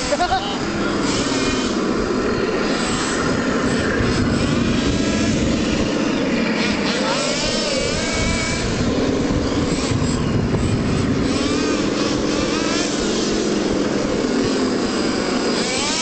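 Tamiya radio-controlled Leopard 2 model tanks driving on sand, their electronic engine sound rising and falling with the throttle. Voices can be heard in the background.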